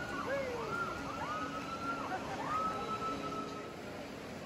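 Several distant voices crying out in long, wavering calls that rise and fall, from people riding the swing over the valley, over the steady rush of river rapids.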